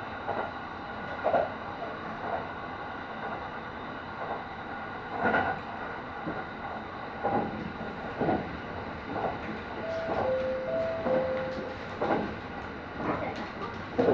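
Kintetsu Ise-Shima Liner electric limited-express train running at speed, heard from inside the front cab: a steady running noise broken by irregular clacks of the wheels over rail joints. A short two-note tone alternates a few times about ten seconds in.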